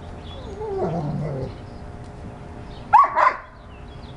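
Dogs vocalising during play: a wavering, pitch-sliding dog sound for about the first second and a half, then two short loud barks close together about three seconds in.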